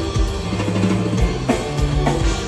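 Rock band playing live, with drum kit, bass guitar, electric guitar and keyboards all going at once, recorded on a phone from the audience of a large arena.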